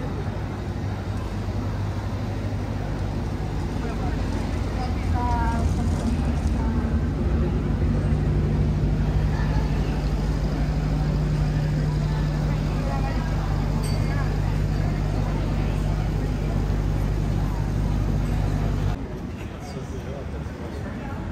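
A motor running steadily with a low hum, its pitch holding level and its loudness swelling in the middle, while people talk around it. It cuts off suddenly about a second before the end.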